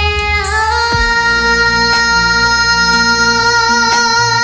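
A six-year-old girl singing over a backing track with bass and a beat. She holds one long note that steps up in pitch about half a second in and then stays steady.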